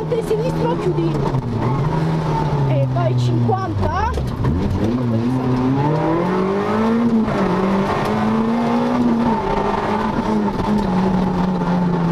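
Peugeot 106 rally car's engine heard from inside the cabin: the revs fall for about four seconds, then climb again as the car accelerates, with brief dips that mark gear changes.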